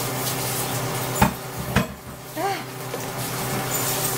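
A spoon knocking twice against a cooking pot while she stirs, over a steady hiss that drops away after the second knock. A short groaning 'ah' of disgust follows.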